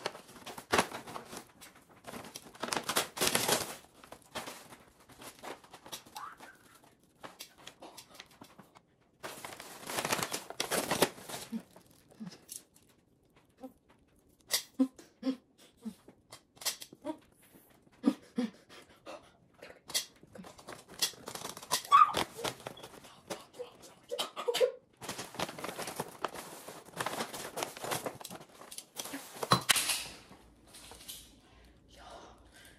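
Plastic and paper grocery bags rustling and crinkling in several long bursts as food and a live crab are unpacked, with scattered clicks of metal tongs. A few short stifled vocal squeaks come in between the bursts.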